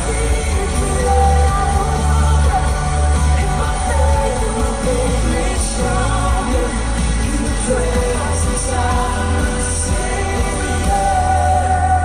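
A contemporary Christian worship song playing: a singer holding long notes over a band with a steady bass.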